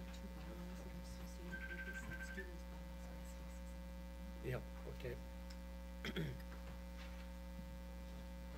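Steady electrical mains hum on the meeting-room audio system, with a short high tone about two seconds in and a few brief faint sounds a little past the middle.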